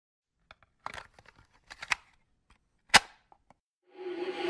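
A sparse run of sharp clicks and snaps, some in quick pairs, the loudest a single crack about three seconds in.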